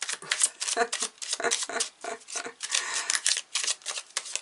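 A tarot deck being shuffled by hand, a quick, uneven run of card flicks and slaps.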